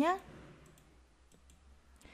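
The end of a woman's spoken word, then a few faint computer mouse clicks advancing a presentation slide.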